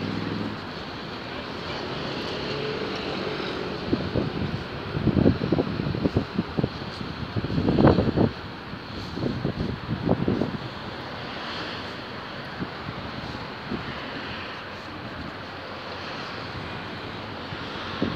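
Wind buffeting the phone's microphone in irregular low gusts, loudest in the middle, over a steady wash of sea surf.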